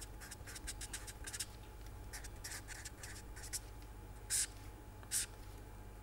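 A felt-tip marker writing on paper: a run of short, faint pen strokes, with two louder, longer strokes in the second half.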